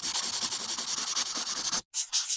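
Pencil-scribbling sound effect: a steady, rapid, bright scratching hiss that cuts off sharply just before the end.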